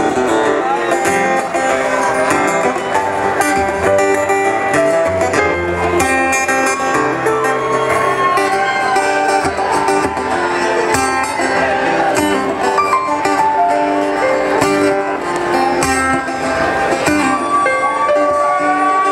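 Live band music led by acoustic guitar, playing an instrumental introduction with no singing yet.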